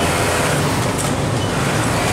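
Steady din of a garment factory workroom, with many industrial sewing machines running together under a low hum.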